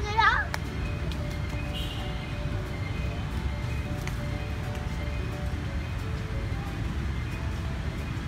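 Busy outdoor crowd ambience: indistinct voices and faint music over a steady low rumble. A brief, loud, high-pitched warbling cry comes right at the start.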